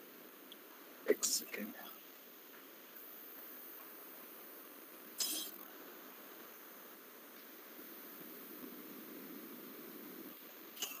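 Faint steady background hiss of a video-call recording, broken by a short cluster of brief sounds about a second in and one short sharp sound about five seconds in.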